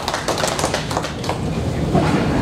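Audience applauding in a hall, the clapping thinning out after about a second and a half.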